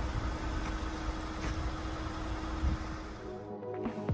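Low rumble with a steady hum from a tracked excavator's diesel engine running some way off. About three and a half seconds in, it cuts to electronic music with deep falling bass sweeps.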